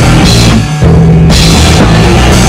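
Punk rock band playing loud in a rehearsal room: distorted electric guitars and a drum kit. The playing stops for a moment about half a second in, then the full band comes back in.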